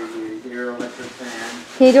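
Speech only: young voices talking, with a louder voice starting near the end.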